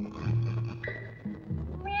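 Film background music: low drum notes that sag in pitch and a held high note. Near the end a loud meow begins.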